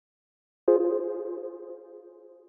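Intro sting: a single synthesized ringing tone that starts suddenly about two-thirds of a second in and slowly fades away.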